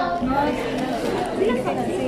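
Several people talking at once: overlapping chatter of voices, with no single clear speaker.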